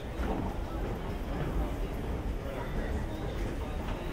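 Indistinct voices of people nearby over a steady low rumble while riding a station escalator.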